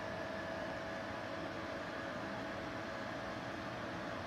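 Steady background hiss with a faint constant hum, unchanging throughout.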